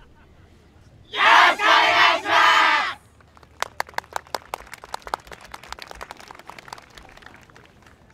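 A dance team shouting together in unison, one loud group cry in three pushes lasting about two seconds. Scattered handclaps follow, several a second, thinning out near the end.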